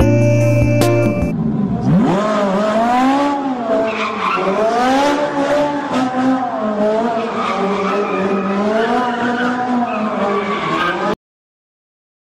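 A car engine revving up and down repeatedly with tyres squealing, as in drifting, following music that ends about a second in. The sound cuts off suddenly near the end.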